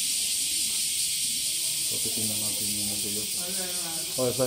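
A steady high-pitched hiss runs throughout without change. From about halfway in, people's voices are heard faintly over it.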